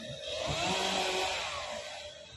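Chainsaw cutting tree branches, revving up and easing back down once in a swell of about a second and a half.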